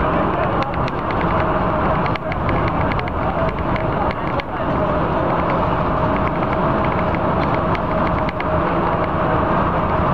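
A Neoplan AN440 city bus running steadily at speed, heard from inside the cabin: constant engine and road noise with a faint steady whine and frequent light rattling clicks.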